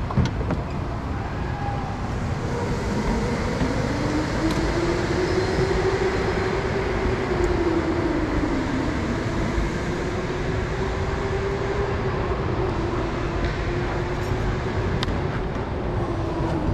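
Go-kart rolling slowly over a concrete floor with no power, its throttle cable broken: a steady rumble of tyres and chassis, with a wavering hum that rises about two seconds in.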